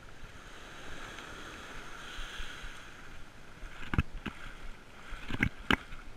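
Small sea waves washing on a sandy shore with wind on the microphone, then a few sharp splashes of water near the end.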